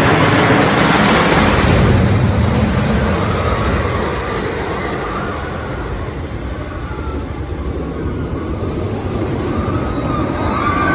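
Great Coasters International wooden roller coaster train rumbling along its wooden track, loudest in the first few seconds and then fading as it moves away.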